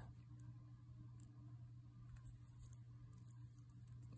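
Near silence: room tone with a steady low hum and a few faint, brief ticks.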